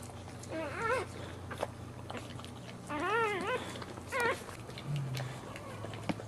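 Newborn Boxer puppy crying in short high squeals that rise and fall, three times: about half a second in, around three seconds, and just after four. Between the cries come wet clicks of the mother Boxer licking it clean.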